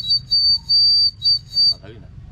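Plastic bird-shaped water whistle, filled with water, blown in about five short, high-pitched toots that sound like birdsong, stopping just before the end.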